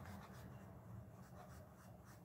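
Faint scratching and rubbing of a small flat paintbrush mixing acrylic paint on a paper-plate palette, over a low steady room hum.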